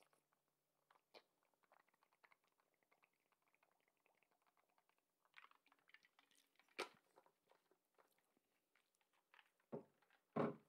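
Near silence: room tone with faint scattered small clicks, and one sharper click about seven seconds in.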